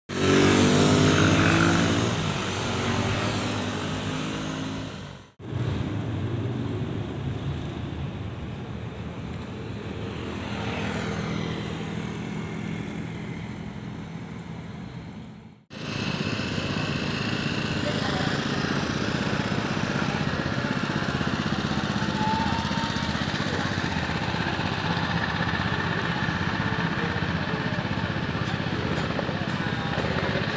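Street ambience of motorcycle and traffic engine noise with a hum of voices in the background, in three stretches broken by sudden dropouts about five and sixteen seconds in. A loud engine with a clear pitch stands out in the first two seconds.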